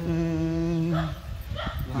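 A man's chanting voice holds one long, steady note for about a second, then breaks off.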